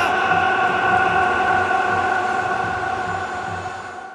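One long held horn-like tone in the cinematic soundtrack, fading slowly.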